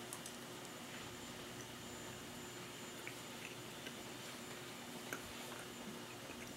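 Faint chewing of a bite of a dry pork meat bar (Krave mango jalapeño), with a few soft clicks over a steady faint room hum.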